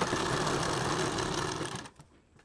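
Domestic sewing machine running, stitching a seam through two layers of cloth, then stopping shortly before the end.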